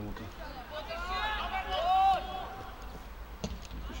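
Men's voices calling out across a football pitch, with one long shout about a second in, over a steady low rumble; a single sharp knock comes a little before the end.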